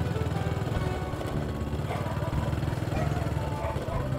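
Small motorbike engine running steadily at low speed while riding, a constant low rumble with a fast even pulse.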